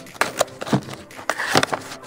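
Cardboard box being torn open by hand: a series of short rips and crackles of cardboard, the loudest about one and a half seconds in.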